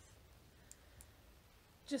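Two faint, short clicks about a second apart over a low steady hum, during a pause in talk.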